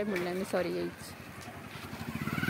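A motorcycle engine approaching and growing louder near the end, over a background of street traffic.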